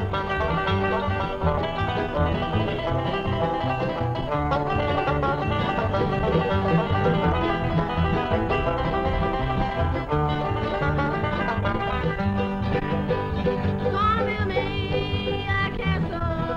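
Acoustic bluegrass played live on banjo, guitar and mandolin, with the banjo's picked notes prominent.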